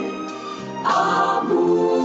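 A choir singing a hymn in sustained, held notes; the sound dips briefly, then the voices come back in together just under a second in.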